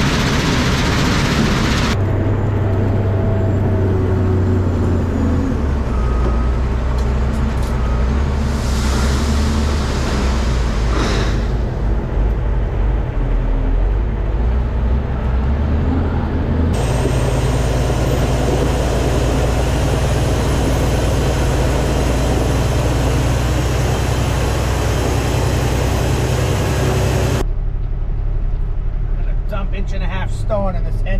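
Heavy diesel dump truck engine running steadily, its sound changing abruptly at a few cuts between clips. A faint high whine runs through the middle stretch.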